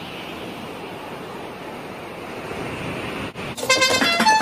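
Steady rushing noise of road traffic, which cuts off about three seconds in. Plucked guitar music starts just before the end.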